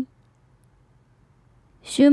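Near silence, a pause between spoken phrases: a woman's voice cuts off at the very start and the next phrase begins just before the end.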